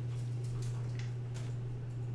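Steady low electrical hum with a few faint, scattered clicks of a computer mouse.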